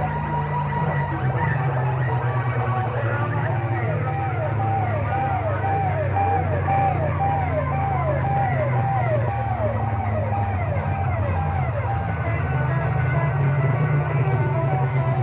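Loud DJ music blaring from horn loudspeakers on a mobile sound rig, with a pounding bass beat. Through the middle of the stretch, a short falling siren-like tone repeats about twice a second.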